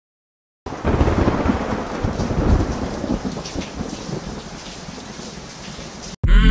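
Thunder rumbling with steady rain, starting suddenly about half a second in and slowly fading.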